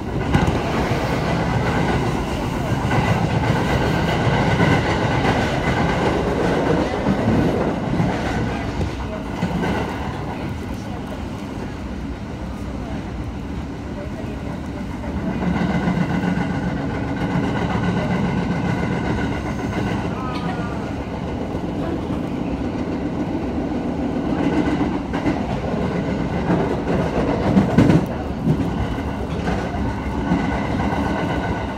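Running noise inside a moving electric train: a steady rumble of wheels on the rails with a faint whine over it. It grows quieter for a few seconds in the middle, then picks up again.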